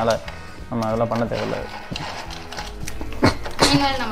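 A voice over background music, with a few sharp snaps of dry biscuits being broken by hand into a glass bowl.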